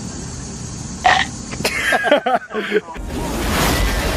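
Brief vocal cries about a second in, then from about three seconds in a loud, steady rumbling crash with hiss from a shark-attack film soundtrack.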